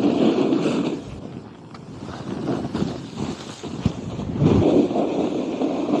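Snowboard sliding and carving through thick snow, mixed with wind buffeting the camera microphone; loud in the first second, quieter for a couple of seconds, then building again.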